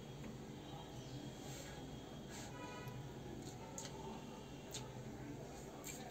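Quiet room with a steady low hum and a few faint clicks of a spoon against a steel plate while eating.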